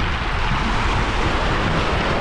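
Small sea waves washing at the shoreline as a steady rush, with wind buffeting the microphone as a low rumble underneath.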